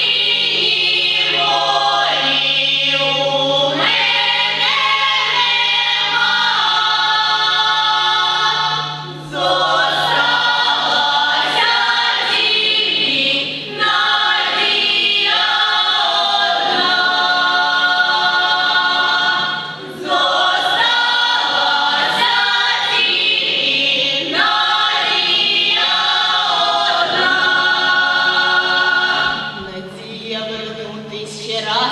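Youth folk choir singing a folk song unaccompanied in several voices, in long phrases with short breaks for breath between them.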